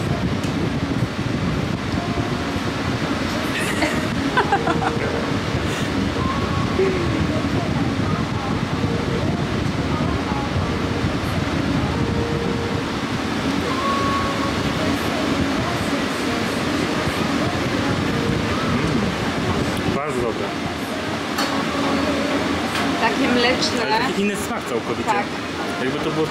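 A steady low mechanical rumble with a few steady tones through it, and voices talking in the background.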